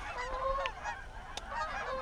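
Canada geese honking, many short calls overlapping one another. A single sharp click comes a little after halfway.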